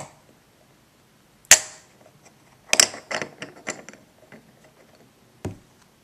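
Plastic poker chips clacking against each other and the tabletop as a hand works a stack: one sharp clack about a second and a half in, a quick run of chip clicks around three seconds, and a dull knock near the end.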